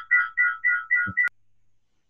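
Electronic phone ringtone: a rapid two-note beeping pattern, about four pulses a second, that cuts off suddenly about a second and a quarter in.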